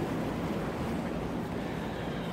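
Steady rush of tropical-storm wind and rain outside, even and unbroken, with a faint low hum under it.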